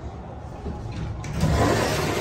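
Stainless-steel elevator doors sliding open at a floor: a low hum of the car, then, about a second in, a rising rush of door-operator and track noise that grows louder as the doors part.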